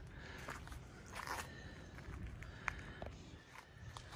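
Faint footsteps on an asphalt driveway, a few soft scuffs and clicks over a low, steady outdoor background.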